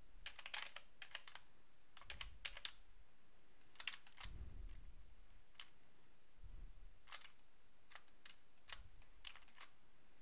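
Faint computer keyboard keys clicking irregularly, in single presses and short clusters, with a few soft low thumps in between.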